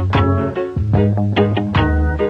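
Reggae band rehearsal recording: plucked guitar notes over a deep bass line playing a short phrase, which fades away right at the end.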